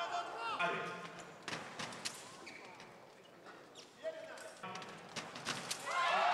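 Fencing hall during a sabre bout: faint voices and crowd murmur with a few sharp taps and clicks of footwork and blades on the piste. Near the end a fencer's loud shout begins as a touch is made.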